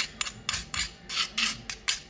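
A metal utensil scraping grated turmeric root out of a white ceramic cup into a bowl, in a series of short, quick scraping strokes, a few a second.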